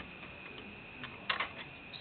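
A few light clicks of Lego plastic pieces knocking together as hay-bale pieces are handled, the clearest a quick cluster a little past halfway. Under them runs a faint steady high tone.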